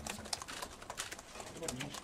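Many quick, irregular clicks from the press room during a pause in speech, with a man's low voice returning briefly near the end.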